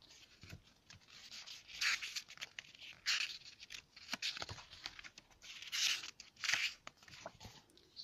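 Paper pages of a thick hardcover comics book being leafed through by hand: about four brief rustling swishes as the pages turn, with light ticks of fingers on paper between them.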